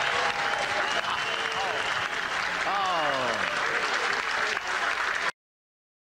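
Club audience applauding and cheering at the end of a song, with a few voices calling out over the clapping. The sound cuts off abruptly about five seconds in.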